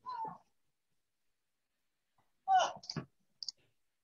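Video-call audio that drops to dead silence between brief wordless voice sounds, one right at the start and another about two and a half seconds in, followed by two quick faint clicks.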